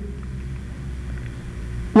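Room tone: a steady low hum with faint background noise and no other event.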